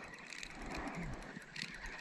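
Spinning reel being cranked, a faint whir with light clicking from its gears.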